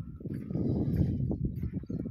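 Footsteps on dirt and handling of a phone while walking: a dense low rumble on the microphone, broken by irregular thumps.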